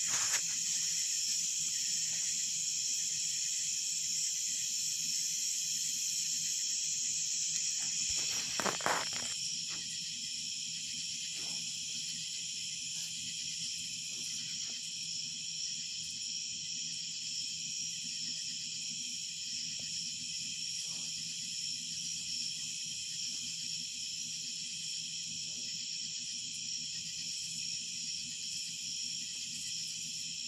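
Steady chorus of crickets and other night insects, a continuous high-pitched trilling on several pitches. A brief louder noise comes about nine seconds in, after which the chorus sounds slightly quieter.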